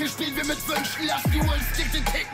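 German rap track playing: a male rapper's vocal over a hip hop beat, with deep bass notes that slide down in pitch.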